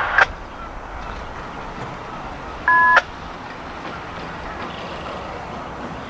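A short two-note electronic beep from a railroad scanner radio, lasting about a third of a second near the middle and ending with a click. Under it is a faint, steady rumble of a distant approaching passenger train.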